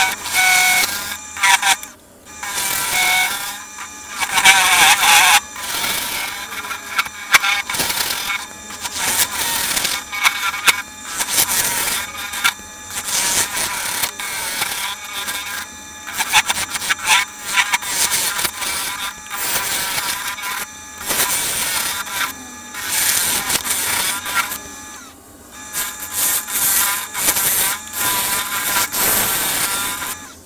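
Carbide turning tool cutting into the inside of a spinning sycamore box blank on a wood lathe, hollowing it in repeated passes: a loud scraping hiss that comes and goes every second or two, with a wavering ringing tone from the tool at times.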